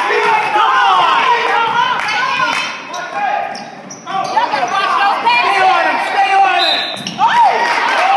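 Youth basketball game in a gym: players and spectators shouting over one another, with the ball bouncing and sneakers squeaking on the hardwood floor, all echoing in the hall. The noise drops off briefly about halfway through and the shouting picks up again near the end.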